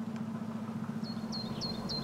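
A steady low hum under a bird's four quick, high chirps, about 0.3 s apart, in the second half.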